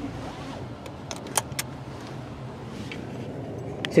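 A car moving slowly, heard from inside the cabin as a steady low hum, with a few sharp light clicks about a second in.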